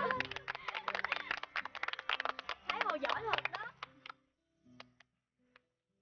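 A group of children cheering and clapping fast as a small campfire of sticks is lit. The clapping stops about four seconds in, leaving a few last claps over soft background music.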